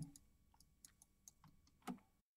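Near silence broken by a handful of faint, short clicks, typical of a computer mouse being clicked while a control is dragged on screen.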